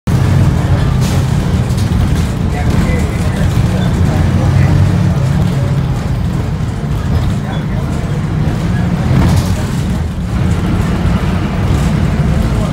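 Inside a moving city bus: a steady, loud low rumble of the bus's engine and road noise, with street traffic outside.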